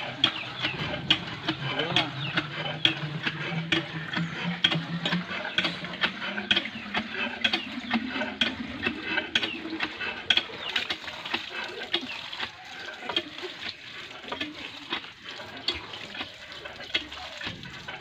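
Metal lever hand pump on a water well being worked steadily: the handle and rod clank about twice a second while water gushes from the spout into a metal pot.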